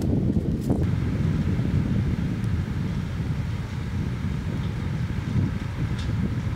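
Wind buffeting the microphone outdoors, a steady low rumble, with a couple of faint clicks in the first second.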